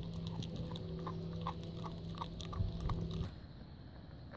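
A dog chewing and tearing at a raw goat kid carcass: irregular clicks and crunches of teeth on meat and bone, over a steady low hum that stops about three seconds in.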